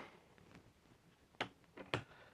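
Mostly quiet room with a few short, light clicks about one and a half seconds in and again near the end, from handling a cordless impact wrench and lag bolt as they are set in place on a wooden stump.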